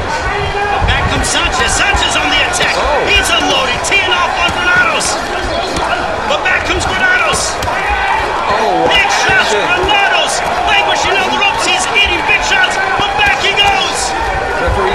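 Boxing gloves landing punches at close range, irregular sharp smacks one after another, over voices calling out indistinctly around the ring.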